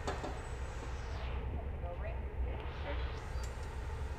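Steady low roar of a glassblowing hot shop's gas burners and ventilation, with a fainter hiss above it.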